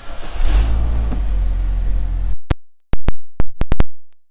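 The 2014 GMC Terrain's 2.4-litre four-cylinder engine starting up, with a brief flare of revs about half a second in, then running loudly until the sound cuts off abruptly a little over two seconds in. A handful of very sharp, loud clicks follow in the last second and a half.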